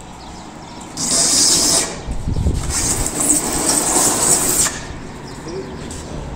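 Large boxed split-type air conditioner being dragged across paving: a short scrape about a second in, then a longer, rougher scrape, over a steady low rumble.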